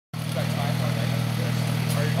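A motorcycle engine idling steadily with an even low hum.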